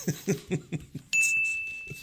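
A desk service bell struck once about a second in, its single high ring fading away over about a second and a half, following a burst of laughter.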